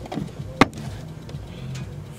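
A single sharp knock about half a second in, as a camera is set down on the car's engine bay, over a low steady hum.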